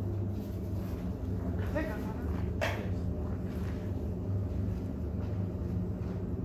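Faint, indistinct voices over a steady low hum; no hammering or other clear work sounds.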